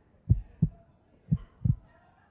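Heartbeat suspense sound effect: pairs of low thumps (lub-dub), about one beat a second, twice.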